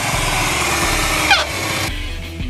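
Honda Shadow motorcycle's V-twin engine running as the bike rides close past, under a steady loud hiss. The sound cuts off suddenly near the end.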